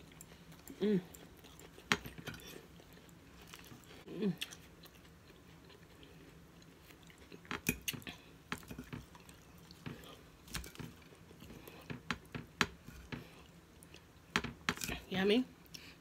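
Close-miked chewing of a mouthful of romaine lettuce salad with raw onion: wet crunches and sharp mouth clicks, thickest in the second half. A short hummed 'mmm' comes about a second in and again about four seconds in.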